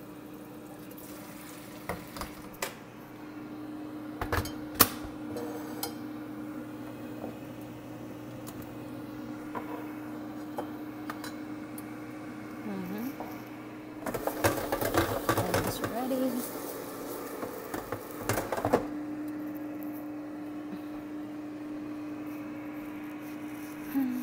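Ninja air fryer running with a steady fan hum, broken by a few sharp clicks and knocks early on and by about five seconds of dense clattering and rattling past the middle.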